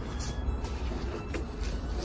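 A steady low rumble, with a few faint knocks and taps as a large hardcover book is handled and turned over.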